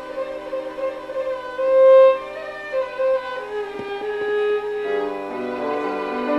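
Two violins playing a classical piece with piano accompaniment, in long held notes. One note swells loudest about two seconds in, and lower notes enter near the end.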